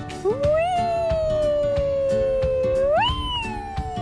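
Baby squealing with delight on a playground swing: one long drawn-out squeal that sinks slowly in pitch, then jumps up to a higher squeal about three seconds in. Background music with a steady beat plays underneath.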